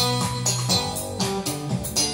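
Roland FR-7x digital accordion playing with a Roland BK-7m backing module's rhythm accompaniment over a steady beat, through a Roland BA-330 amplifier, in an instrumental passage before the vocals.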